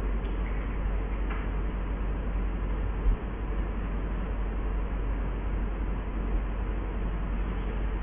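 Steady low hum and hiss of the lecture recording's background noise, with one short low thump about three seconds in.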